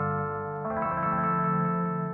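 Ambient electronic music: sustained, layered chords, with a new chord coming in under a second in.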